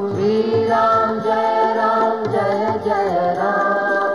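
Devotional Hindu bhajan: a male voice chanting the names of Rama to a melody, over a steady drone and a rhythmic percussion beat.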